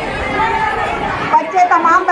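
Several people talking at once in a crowd, with one voice standing out clearly from about one and a half seconds in.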